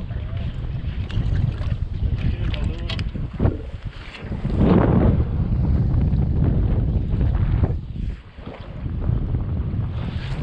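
Wind buffeting the microphone in a steady low rumble, swelling about halfway through and dropping briefly near the end, over choppy water around a small boat, with a few light handling clicks.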